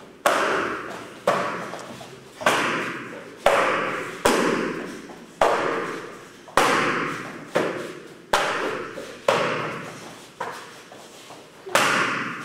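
Kicks smacking a handheld taekwondo kicking paddle: a sharp slap roughly once a second, about a dozen in all, each followed by a long echo.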